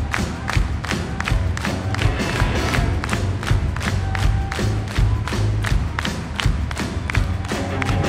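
Live rock band playing: a steady drum beat with bass and electric guitars, heard from within the audience.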